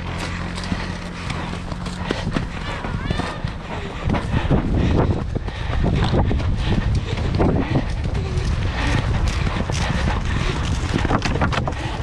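Horses galloping on turf, a rapid irregular run of hoofbeats that grows louder about four seconds in.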